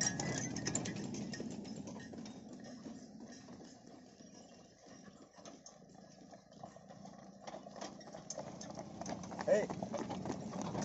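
Bullocks' hooves clopping on the road and the rattle of a loaded, stone-laden bullock cart rolling along, fading in the middle and growing louder again toward the end. A man shouts "Hey!" near the end.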